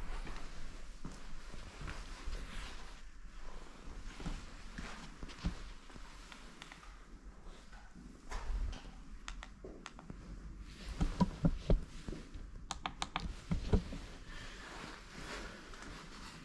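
Footsteps and scuffs on a debris-strewn floor in a large empty room, with irregular thuds and a cluster of sharp clicks and knocks past the middle.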